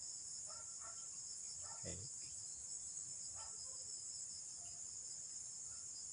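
A steady, high-pitched chorus of field insects chirring without a break.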